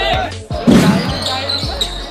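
Music with a singing voice cuts off about half a second in, and a loud burst follows. Then a basketball is dribbled on a hard court, bouncing about twice a second, with voices in a large hall.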